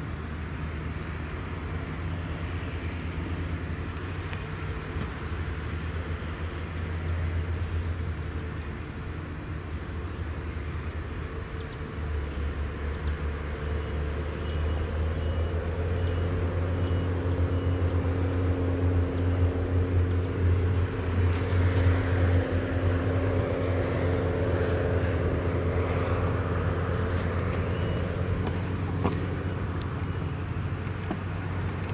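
Claas Jaguar 970 self-propelled forage harvester chopping silage maize and blowing it into a trailer pulled alongside by a tractor. Its engine makes a steady low drone with a hum above it, which grows louder about halfway through.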